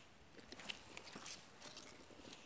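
Faint rustling with scattered light crackles.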